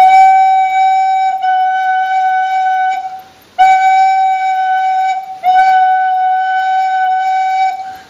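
A recorder holding one quiet note, sounded in three long blows with short breaks between, first slightly higher and then slightly lower in pitch at about the same breath volume. The small pitch shift is made by changing the breath alone, not the fingers.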